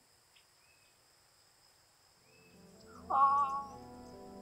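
Faint steady insect trilling with a few short bird chirps, then background music fading in over the last two seconds, with a loud held note a little after three seconds in.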